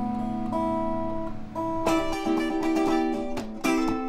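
Guitar playing slow chords that ring on; a new chord is struck just under two seconds in and another near the end.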